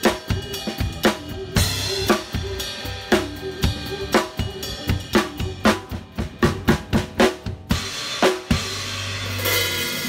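Drum kit played in a busy fill of snare, tom and bass drum strokes, the strokes coming closer together around the middle. Near the end the strokes stop and a cymbal crash rings out over a bass drum hit.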